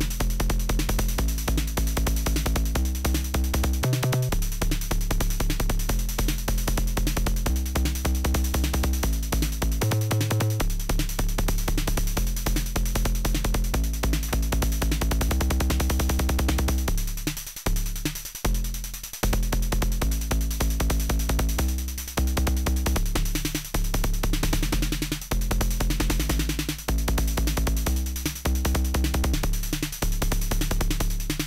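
Make Noise 0-Coast synthesizer playing a sequenced kick drum that works as a bassline: a fast, steady pattern of clicky kick hits whose deep, lengthened decay is pitched, stepping between bass notes as a keyboard riff changes them. The bass briefly drops out a little past halfway, then the pattern comes back.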